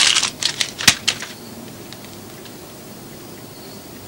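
Typewriter keys struck in a quick, uneven run of several clicks over the first second or so, then stopping.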